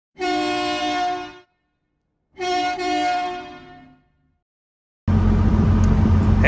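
Two long blasts of a truck air horn, the second trailing off slowly. About five seconds in, a semi truck's diesel engine starts to be heard idling steadily.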